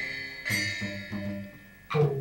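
Instrumental music: a few plucked string notes that ring and die away, growing faint before a new note strikes near the end.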